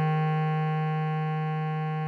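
A single long bass clarinet note, the tied written F4 of the melody, held steady and slowly fading, over a sustained keyboard chord.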